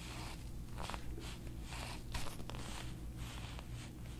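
Rhythmic rustling of hands rubbing over a patient's neck and hair during hands-on neck work, picked up close by a clip-on mic. A few short clicks sound over it, the loudest about two seconds in.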